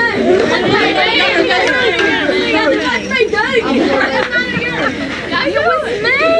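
Many people talking at once: overlapping chatter of a group of voices, with no one voice standing out.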